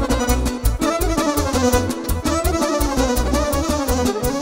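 Live Romanian folk party band playing an instrumental hora break: violin and electronic keyboard carry the melody over a steady, driving drum beat.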